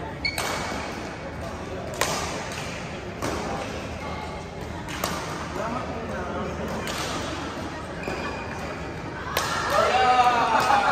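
Badminton rackets striking a shuttlecock during a doubles rally: five sharp cracks a second or two apart, echoing in a large sports hall, with a few short squeaks of court shoes. Players' voices rise near the end.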